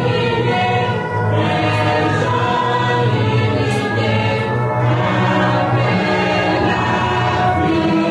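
Choral music: a choir singing slow, sustained chords at a steady level.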